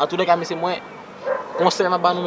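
A man's voice talking rapidly and animatedly in short, quick syllables.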